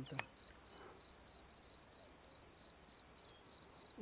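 Crickets chirping steadily in a fast, even pulse, faint and high-pitched.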